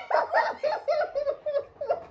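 A woman laughing in a quick run of short, high-pitched 'ha' pulses, about five a second, fading toward the end.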